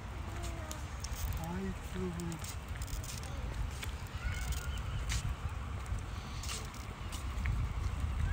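Outdoor ambience of people talking faintly at a distance over a low steady rumble, with scattered light clicks.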